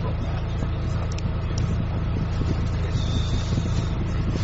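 The engine of JR Hokkaido's Dual Mode Vehicle, a converted minibus, idling steadily while the vehicle stands still, heard from inside the passenger cabin.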